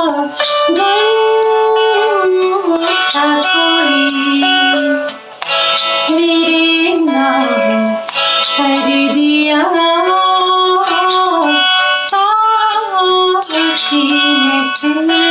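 A woman singing a slow Hindi song, her voice holding and gliding between long notes, with plucked guitar accompaniment.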